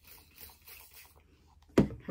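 Faint rustling of hands handling things, then one sharp, loud thump near the end.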